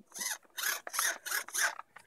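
Metal-gear RC tail servo, still unpowered, turned back and forth by hand through the rudder so that its gear train grinds in about five short strokes.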